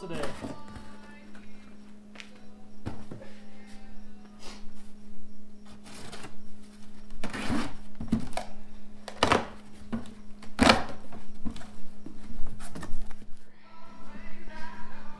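Cardboard shipping boxes being handled and their packing tape slit and torn open with a utility knife: a string of scrapes, rips and thumps, the loudest rips about seven, nine and ten and a half seconds in, over a steady low hum.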